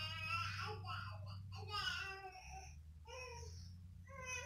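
A young child fussing, crying in about four short, whiny bursts.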